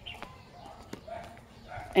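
A dog barking faintly, a few short barks, with light clicks.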